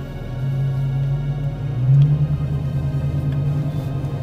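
Background music over the low, steady running of the Dodge Charger R/T's 5.7-litre Hemi V8 as the car pulls away, heard from inside the cabin. About two seconds in, the engine note rises and gets louder as the car accelerates.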